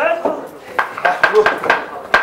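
A turoń's hinged jaw clacking rapidly, a quick run of sharp knocks about four a second, with a light metallic jingle and bits of voices among them.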